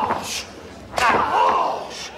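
A single sharp smack of a blow between pro wrestlers about a second in, followed by shouting voices.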